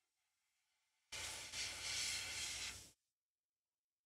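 A short burst of hissing air, a little under two seconds long, starting about a second in, with a low hum beneath it.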